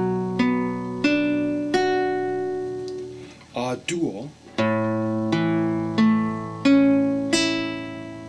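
Nylon-string classical guitar playing a B minor chord picked out one string at a time, a new note about every 0.7 s with the earlier notes ringing on. After a short break, an A major chord is picked out string by string the same way.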